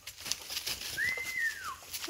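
Footsteps crunching on forest leaf litter, and about a second in a single clear whistled call that rises slightly and then slides down in pitch.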